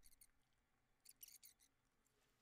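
Near silence: room tone, with a few faint, short clicks, a small cluster of them about a second in.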